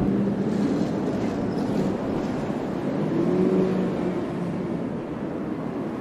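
A car's engine running, with an even rumble and noise that slowly fade across the few seconds.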